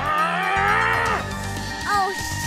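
A long, drawn-out pitched cry that rises slightly and falls away a little over a second in, over background music; a short rising cry follows near the end.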